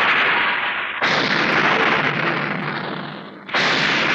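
Film sound effect of heavy rain hissing, with a sudden thunderclap about a second in that slowly fades away, and another crash near the end.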